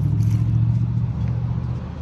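A low, steady engine hum, loudest in the first second or so and easing a little toward the end.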